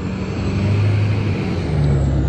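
A pickup truck driving past on the street, its engine and tyres getting louder as it comes by.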